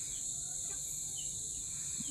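Steady, high-pitched insect chirring in the background, running unbroken at an even level.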